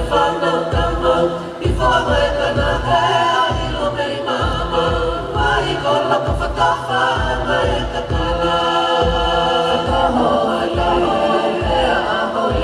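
Many voices singing together in harmony, with a steady low beat underneath a little more than once a second.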